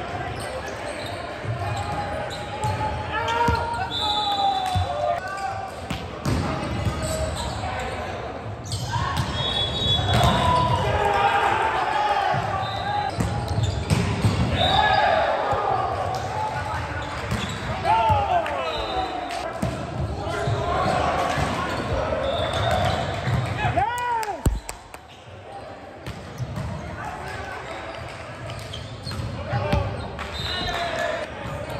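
Volleyball rally sounds echoing in a gymnasium: the ball being struck and bouncing on the hardwood floor in repeated sharp smacks, amid players' shouted calls.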